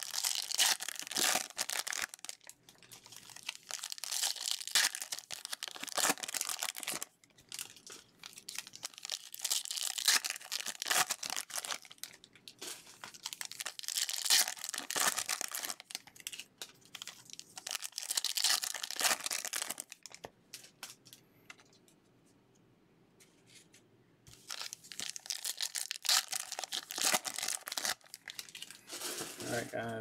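Foil wrappers of 2020 Bowman Hobby trading-card packs being torn open and crinkled as the cards are pulled out and handled, in repeated bursts with a quieter pause of a few seconds about two-thirds of the way through.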